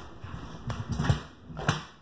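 Handling noise from a phone being carried and moved: a few soft, irregular knocks and thumps, clustered about a second in and again near the end.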